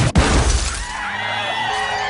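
A sharp, heavy impact with glass shattering just after the start: a car windshield cracking as a severed giraffe's head is flung into it. Cinematic sound effect.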